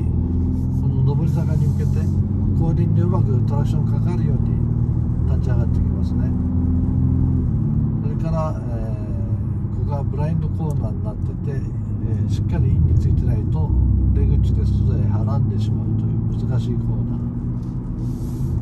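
Car engine and road noise heard from inside the cabin, a steady low drone whose tone shifts a few times, about 2.5 and 7.5 seconds in, as the car drives through a chicane on a wet circuit.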